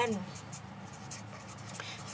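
Felt-tip marker writing a word on paper: quiet scratching strokes of the tip across the sheet.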